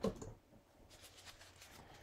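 Faint handling sounds: a brief soft knock right at the start, then scattered quiet clicks and rustles of small objects being picked up and moved.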